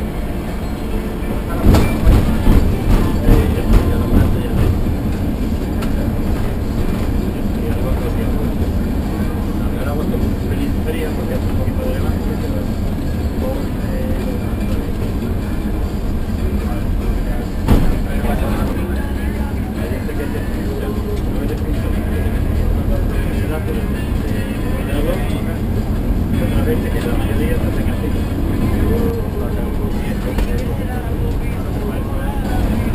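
Inside a moving bus: steady engine and road noise, with background voices and music. A run of loud knocks and rattles comes about two seconds in, and a single sharp knock a little past the middle.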